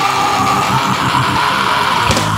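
Hardcore/nu metal recording: distorted electric guitars with a long held high note over them.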